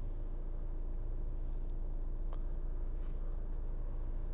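Audi Q3's 2.0 TDI four-cylinder turbodiesel and tyre noise heard inside the cabin while driving: a steady low hum, with a couple of faint ticks about halfway through.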